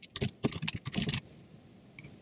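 Quick typing on a computer keyboard for about a second, then a pause and a single mouse click at the very end.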